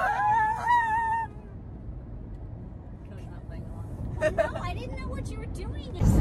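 For about the first second, high, wavering voices hold a long wail. Then comes the steady low road noise of a car heard inside its cabin, with faint voices under it.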